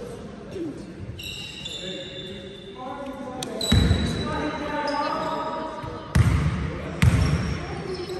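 A basketball bounced three times on a sports hall floor, the first bounce about four seconds in, the next two close together near the end, with short high shoe squeaks on the court earlier and the hall ringing after each bounce.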